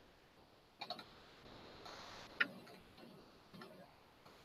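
A few faint, sharp clicks of a computer mouse at irregular intervals: a pair about a second in, the loudest about two and a half seconds in, and a couple more near the end.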